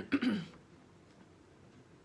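A woman clearing her throat once, a brief sound falling in pitch in the first half second, followed by quiet room tone.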